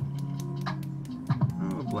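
Hand-held pepper mill grinding black pepper, a quick run of sharp clicks, over background music with long held notes.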